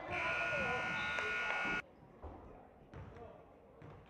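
Gym scoreboard buzzer sounding as the game clock hits zero at the end of a period: a loud, steady multi-tone blare lasting almost two seconds that cuts off suddenly. After it, a basketball bounces a few times on the hardwood floor.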